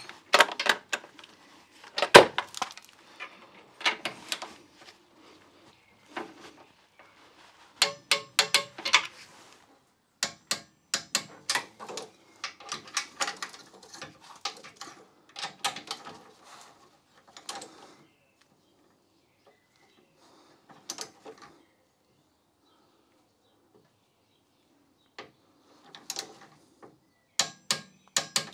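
Hand socket ratchet clicking in quick runs as the anti-roll bar's mounting nuts are tightened down, mixed with metal knocks of tool on fittings. The clicking stops for several seconds about two-thirds through, then picks up again briefly near the end.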